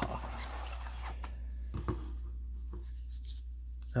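Faint handling noises of a plastic-packaged action figure: light rustling of its plastic bag in the first second, then a few soft taps and clicks against its plastic tray, over a low steady hum.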